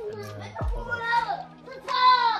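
Young children's high voices talking and calling out, with a short low thud about two-thirds of a second in.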